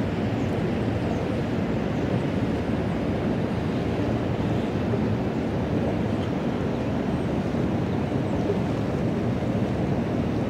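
Steady rushing of water pouring through a dam's open floodgates and the fast current below it, mixed with wind on the microphone.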